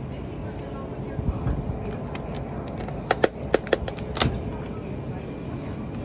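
Grocery store background noise, with a quick run of about six sharp clicks or clacks around three to four seconds in.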